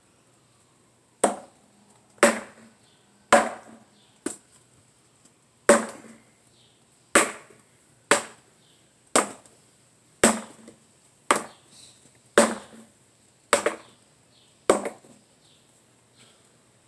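A talwar striking a wooden practice pell: about thirteen sharp hits, roughly one a second, each with a short ring after it.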